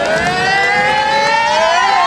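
Several high voices holding one long call together, rising steadily in pitch and dipping near the end.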